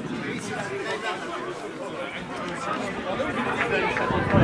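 Several indistinct voices talking and calling over one another, chatter that never becomes clear words.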